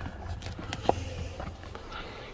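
Faint handling noise of someone moving about inside a car's cabin: a low rumble with a few small knocks and rustles, one sharper tick a little before a second in.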